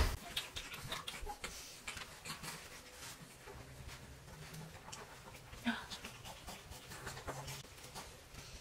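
Quiet handling sounds as a baby swing is set up and an infant is placed in it: scattered faint clicks and rustles, with a slightly louder knock or click a little before six seconds.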